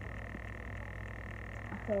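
Steady low background rumble with a thin steady high tone over it, unbroken by any distinct event.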